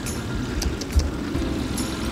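A motorcycle running along a lane, with a steady low rumble and a few clicks, one thump about a second in.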